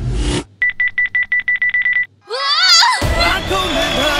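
An electronic ringing effect, a rapid even pulsing on one high tone like a telephone bell, lasting about a second and a half. A short rising glide follows, and music starts about three seconds in.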